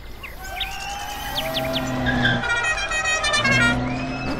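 Jingle sound design: a small car's engine drawing closer and louder, with short whistling sound effects and quick bright musical notes over it.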